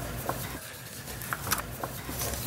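Audience applause starting up, a few separate claps standing out over a steady haze of clapping.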